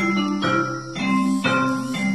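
Digital piano being played: chords and melody notes struck about twice a second in a steady rhythm over held bass notes.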